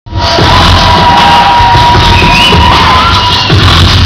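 Loud live beatbox-built electronic music over a venue PA, with heavy bass and a held high tone through most of it, and a crowd cheering over it.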